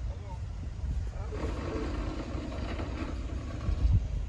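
Low, uneven rumble of wind buffeting the microphone, with a heavier gust or knock just before the end. Indistinct voices are heard in the middle.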